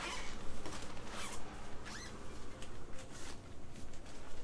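Footsteps, knocks and clothing rustle as people climb down the steps into a boat's cabin, with a short rising squeak about two seconds in.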